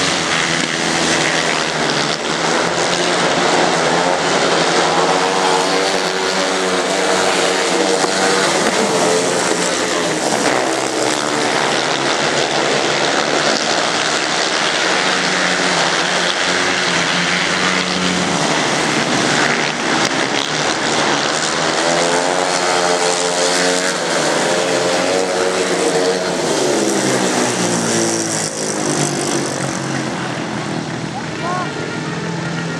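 Several sand track racing solo motorcycles with single-cylinder engines running flat out around the oval. The engine sound is loud and unbroken, rising and falling in pitch in waves as the bikes sweep past, and eases off slightly near the end.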